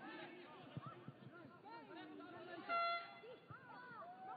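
Scattered voices calling out across a football pitch during play, with a short, steady horn-like toot about three seconds in, the loudest sound.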